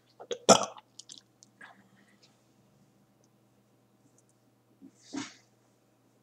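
A person coughing hard once about half a second in, followed by a few faint clicks, then a softer second cough near the end.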